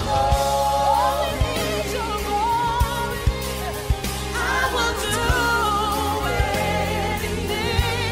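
Gospel song with sung vocals: a held, wavering melody with vibrato over a sustained low accompaniment and occasional percussive hits.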